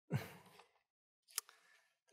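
A short breathy sigh into a close microphone, the voice falling in pitch, followed about a second later by a single brief click.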